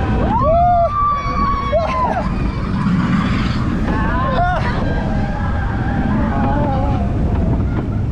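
Seven Dwarfs Mine Train roller coaster in motion: a steady rumble of the cars on the track with wind buffeting the microphone. Riders' voices cry out in rising and falling whoops about half a second in, and again briefly around four and a half seconds.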